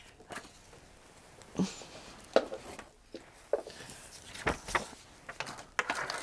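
Objects being picked up, moved and set down on a tabletop: a handful of light, separate knocks and clunks, the loudest about one and a half seconds in.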